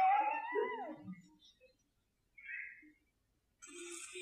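A man's voice giving one high, falsetto-like vocal call that rises and then falls, lasting about a second. A couple of faint, breathy sounds follow.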